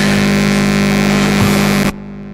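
Loud, steady electrical buzz and hum with hiss, typical of interference in a sound system or recording feed. It cuts off abruptly just before the end.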